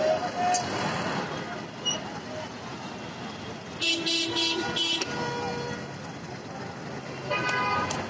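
Busy street traffic noise with vehicle horns: three short horn blasts about four seconds in, and another horn sounding near the end.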